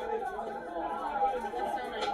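Overlapping chatter of a crowd of people talking at once, with no clear words.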